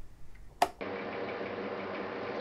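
A single sharp click a little past halfway into the first second. It is followed by a steady electrical hum and hiss from a small loudspeaker, muffled and thin, as a playback device comes on between programmes.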